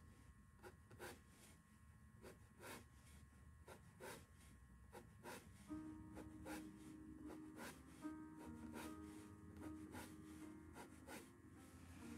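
Near silence, with faint short scratches of a small angular paintbrush drawing lines on linen canvas, irregular, about one or two a second. From about halfway, faint held musical tones sit under them.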